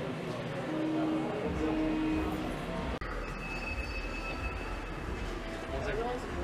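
Shop ambience: a steady noisy hum with faint voices and faint steady tones, broken by an abrupt cut about three seconds in.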